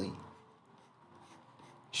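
Faint scratching of a pen as letters are written.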